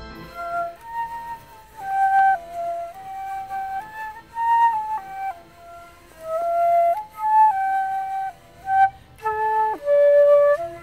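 Solo flute playing a melody one note at a time, moving through short stepwise phrases with some held notes.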